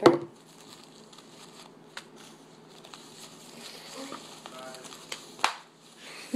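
Disposable diaper crinkling and rustling as it is unfolded and handled: a loud crinkle right at the start, quieter rustling through the middle, and another sharp crinkle about five and a half seconds in.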